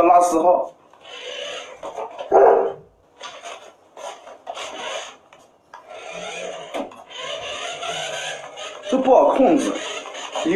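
Remote-control toy car whirring in several stop-start runs of a second or two as it drives across a wooden floor, the longest run near the end.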